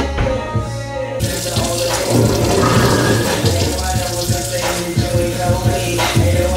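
Kitchen faucet turned on about a second in, water running steadily into the sink, under hip-hop music with a steady beat.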